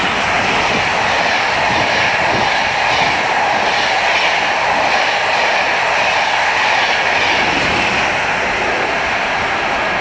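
Steady rushing wheel-on-rail noise of a steam-hauled train's carriages passing at speed close by, easing slightly near the end.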